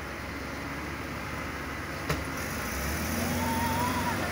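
A car door slams once about two seconds in, then the SUV's engine runs and its note rises as the vehicle pulls away, growing louder toward the end.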